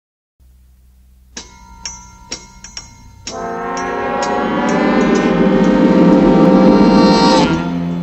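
Orchestral intro music: a few short, ringing struck notes, then a long sustained chord that swells louder for about four seconds and breaks off near the end.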